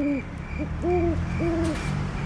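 A series of soft, low, owl-like hoots, each about a third of a second long, three or four in quick, uneven succession. A faint, quick, regular high chirping runs beneath them.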